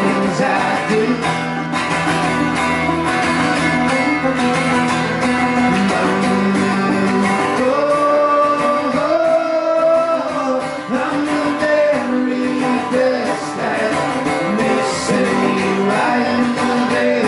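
Live acoustic guitar and banjo playing a song, with a voice singing over them and holding a long note about halfway through.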